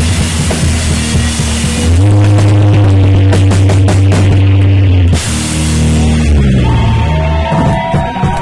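A live rock band with distorted electric guitar, bass and drums plays what sound like the closing held chords of a heavy song. A loud sustained chord with drum hits starts about two seconds in and cuts off about five seconds in. Another held chord follows, dying away near the end into thin ringing guitar tones.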